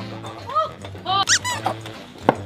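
A few short high-pitched squeals over background music, the loudest and highest run about a second in.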